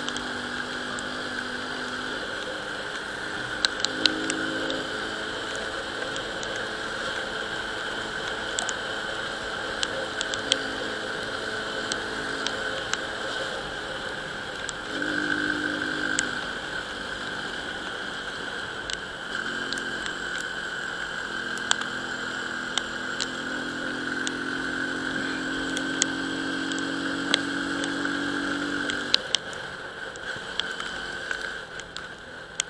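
Euro Rapido 110 scooter's small single-cylinder engine running at a steady riding speed, its note swelling under more throttle around the middle and again through the last third, with a steady whine above it. Scattered sharp ticks sound throughout.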